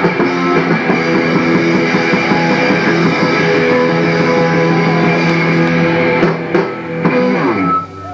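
Punk rock band playing live: distorted electric guitar chords held over drums, the music breaking off near the end.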